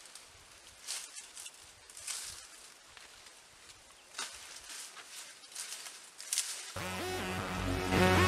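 Palm fronds rustling in a few short, faint bursts as leaves are pulled from a palm tree. About seven seconds in, music starts abruptly with a steady low bass and is louder than the rustling.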